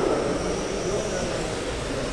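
Electric GT12 1/12-scale RC race cars running on a carpet track, their motors giving a faint steady high whine.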